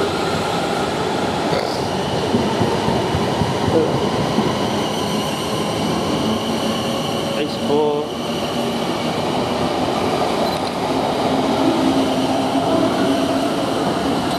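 Class 450 Siemens Desiro electric multiple unit pulling out along the platform: a continuous loud rumble of wheels on rail with a steady electric whine from its traction equipment as it gathers speed.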